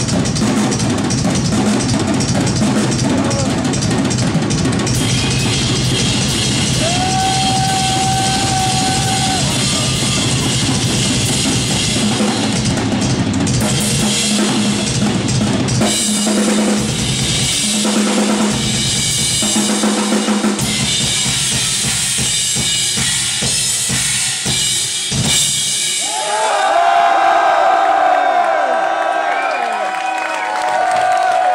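A live rock drum kit in a fast, dense solo: bass drum, snare, toms and cymbals, with rolls. About four seconds before the end the drumming stops and the crowd cheers.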